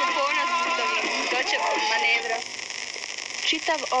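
Speech: a woman talking, with some held tones underneath, breaking off about two and a half seconds in; after a brief quieter gap, another voice begins near the end.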